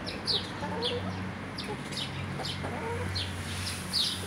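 Ataks chickens feeding, with a few soft hen clucks and a steady run of short, high, falling peeps about twice a second.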